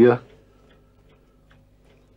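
A man's spoken word ends just at the start, followed by a quiet pause of room tone with a few faint ticks.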